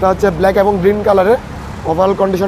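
A man talking, with a short pause near the end, over a low steady background rumble.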